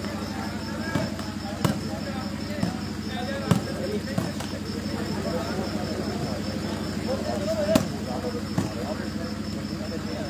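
A volleyball being struck by hand during a rally: a string of sharp slaps, several in the first half and two more late on. The loudest comes about three-quarters of the way through. Murmured voices and a steady hum run underneath.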